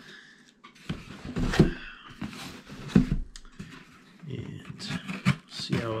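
Scissors cutting along the packing tape of a cardboard shipping box: scraping cuts with several sharp clicks and knocks of blade and box, the loudest about one and a half and three seconds in.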